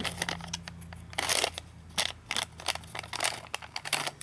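A small shiny candy packet crinkling in the fingers, a string of irregular crackles as it is gripped and pulled at to tear it open. The wrapper does not tear.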